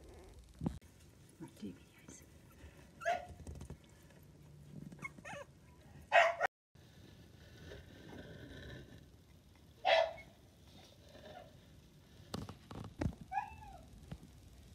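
Three-week-old miniature dachshund puppies whimpering and squeaking: a handful of short, high calls spread through, the loudest about six and ten seconds in, and a few falling squeaks near the end.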